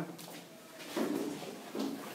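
Faint, short bits of voice in a small room, with a few small clicks and knocks and steady room hiss.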